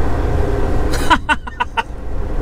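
Semi truck's diesel engine running at low speed, heard from inside the cab as a steady low rumble. About halfway through there is a brief run of short, sharp sounds.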